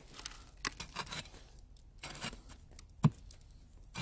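A small hand digging tool scraping and picking at packed dirt, loosening soil around a bottle buried in the wall of the hole, with a scatter of small scrapes and crumbles. One sharp knock about three seconds in.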